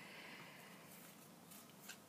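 Near silence with the faint rustle of tarot cards being handled and slid against one another, and two light clicks near the end.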